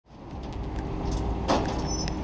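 Low outdoor vehicle rumble fading in from silence, with a short burst of noise about one and a half seconds in.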